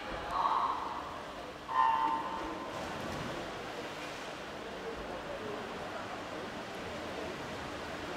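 Electronic starting signal of a swimming race sounding once, a short horn-like beep a little under two seconds in, after a shorter pitched sound about half a second in. A steady wash of pool-hall noise follows as the swimmers go into the water.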